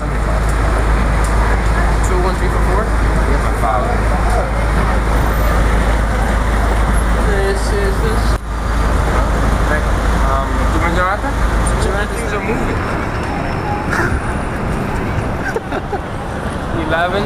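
Busy city street traffic noise, dense and steady, with scattered voices of passers-by mixed in. A low rumble runs underneath and eases about twelve seconds in.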